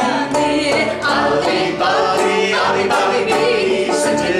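Several voices, men's and a woman's, singing a folk song together in harmony, the voices to the fore.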